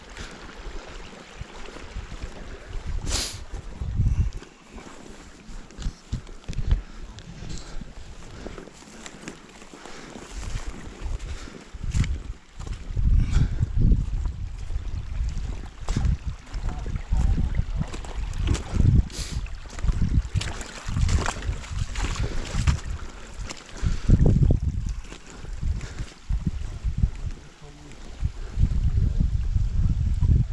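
Wind buffeting the microphone in uneven gusts, over the faint running of a small, shallow stream, with a few scattered clicks.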